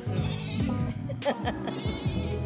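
A goat bleating, played back from a phone, over a steady music beat.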